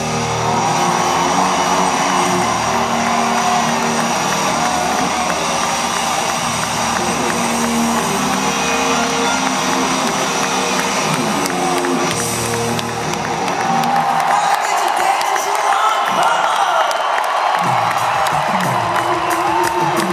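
Live rock band playing out the final bars of a song over a cheering crowd; about two-thirds of the way through the band stops and the audience's cheering and whoops carry on louder.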